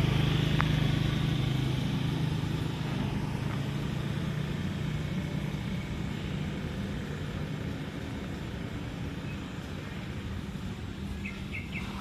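A motor vehicle's engine hum, steady and slowly fading away, over a constant wash of outdoor noise. A few faint bird chirps come near the end.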